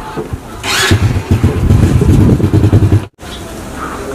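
A small step-through motorcycle engine running, loud and low, from about a second in. It cuts off abruptly a little after three seconds, leaving a quieter steady background.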